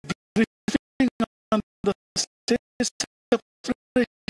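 Chopped, stuttering audio: short pitched fragments of sound, about three or four a second, each cutting off abruptly into dead silence, like a broadcast audio feed breaking up.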